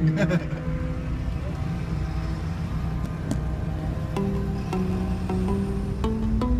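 Background music with plucked string notes stepping in pitch from about four seconds in, over a steady low rumble of a slow-moving car heard from inside its cabin.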